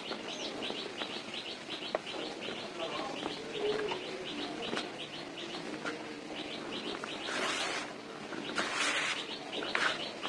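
Dry cement powder rustling and crumbling as hands sift it in a plastic tub, with short hissing pours about seven and nine seconds in. Over most of it a bird chirps in quick repeated notes, about five a second, fading out before the pours.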